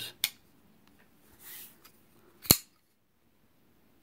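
JRP Kingfisher titanium-and-G10 custom folding knife being worked by hand. There is a light click from the blade just after the start. About two and a half seconds in comes a single sharp, loud click as the blade is flicked open and locks, after the detent releases.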